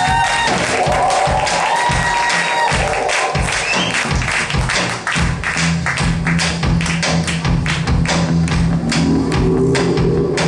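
Live rock band playing the intro of a song, with quick, dense drum hits throughout and a low sustained tone coming in about halfway.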